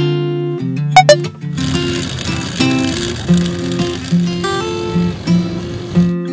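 Two sharp button clicks, then a blender running with a steady whirring noise for about four seconds, cutting off at the end, as the berries in the jar are blended into liquid. Acoustic guitar music plays throughout.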